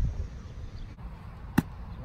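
Quiet outdoor field ambience, then one sharp impact about three-quarters of the way through: a football being kicked.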